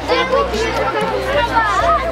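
Children chattering close by in a crowd, several voices overlapping.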